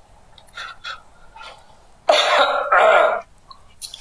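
A person coughing twice in quick succession, two short harsh coughs about two seconds in.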